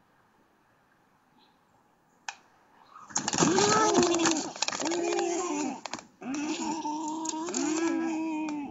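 Black stork nestlings screaming in distress as a goshawk attacks the nest: from about three seconds in, a series of loud, harsh calls, each rising and then falling in pitch, roughly one a second, with sharp clicks and rustling mixed in.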